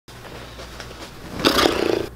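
A man dropping onto a cushioned sofa about one and a half seconds in: a sudden loud rush of sound after a faint low hum.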